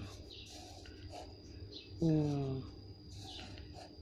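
Felt-tip marker strokes scratching faintly on paper while a Thai letter is written, and about two seconds in a woman says the letter name "ngaw" once, in a falling pitch.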